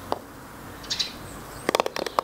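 Small garden birds chirping over a quiet outdoor background. One brief high chirp comes about halfway through, and a quick run of sharp chirps comes near the end.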